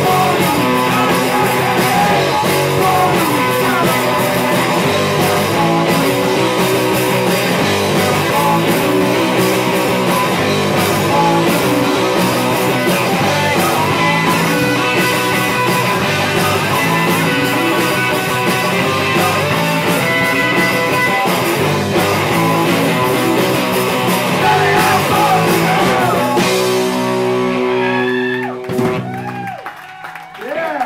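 Live rock band playing electric guitars, bass guitar and drums. About 27 seconds in, the song ends on a held chord that rings and then breaks off.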